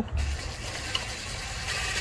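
DeWalt cordless impact driver running steadily, driving a valve cover bolt in, with a short low thump as it starts.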